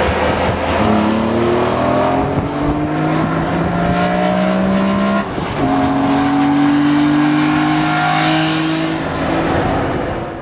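BMW E46 M3's S54 inline-six with a CSL intake airbox, headers and a custom tune, pulling hard under acceleration with its pitch rising steadily. It breaks off briefly about five seconds in, and a second rising pull follows at a higher pitch.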